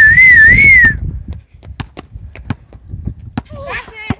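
A person whistling one loud note for about a second, its pitch wavering up and down. It is followed by irregular sharp knocks of a basketball being bounced on an asphalt court, with a short voice near the end.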